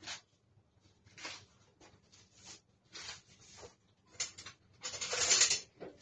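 Short, irregular scraping and rustling handling noises, about one a second, with a longer, louder rustle about five seconds in.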